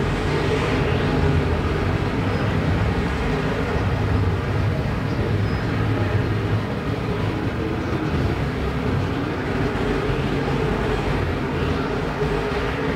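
A field of IMCA Modified dirt-track race cars running at racing speed, their V8 engines blending into one steady drone.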